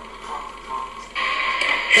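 A man shouting wildly on a film soundtrack. It jumps suddenly louder a little past halfway and stays loud.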